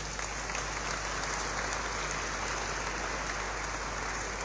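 Audience applauding with steady, even clapping.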